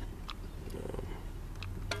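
Hot water poured from a small steel saucepan onto coffee grounds in a paper filter set in a flower pot, with soft bubbling as trapped air comes back up through the pot's drain hole because no spoon is propping the filter. A few faint ticks and a low steady hum run underneath.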